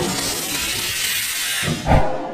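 Whoosh of ether igniting inside a large bias-ply racing tire to blow its bead onto the wheel, with a low thump near the end.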